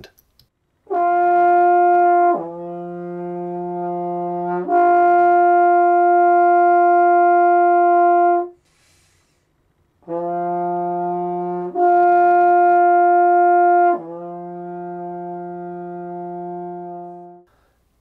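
A brass instrument, played with an upstream embouchure, slurs back and forth across an octave in long held notes: high, down an octave, back up and held, then after a pause low, up, and down again. The upper notes are louder than the lower ones. The slurs demonstrate changing register.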